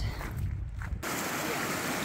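A low rumble on the microphone; then, after a cut about a second in, a small mountain creek running over rocks in a steady rush.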